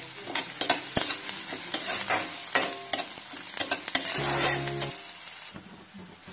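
Chopped onions, curry leaves and garlic sizzling in hot oil in an iron kadhai while a spatula stirs them, with repeated short scrapes and clicks against the pan. There is one louder, longer stretch a little after four seconds in.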